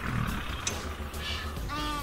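Male lion vocalizing: a breathy growl at the start, then a short pitched call near the end.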